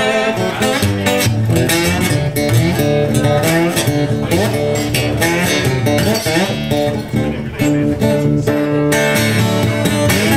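Blues slide guitar played solo in an instrumental break, with notes sliding up and down in pitch about four seconds in over a strummed rhythm.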